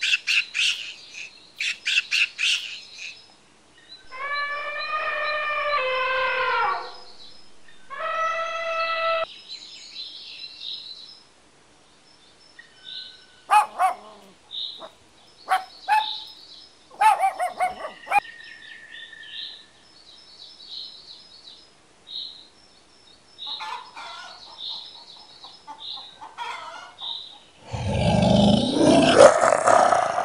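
A run of animal calls: short high chirps scattered throughout, two longer pitched calls a few seconds in, and a loud rough noise near the end.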